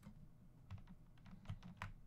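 Faint computer keyboard keystrokes: a quick run of about seven clicks in the second half, the last ones the loudest.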